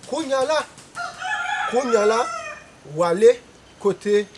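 A rooster crowing once in the background: one long call lasting about a second and a half.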